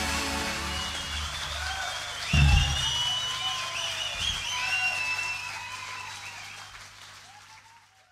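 The close of a live rock song: the band's sound dies away after a last loud low hit about two and a half seconds in, and a concert crowd cheers and whistles, fading out near the end.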